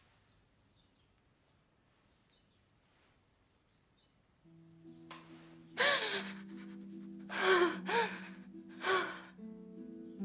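A woman crying: four loud gasping, sobbing breaths in the second half. Under them, soft film-score music with low held notes comes in about halfway, after near silence.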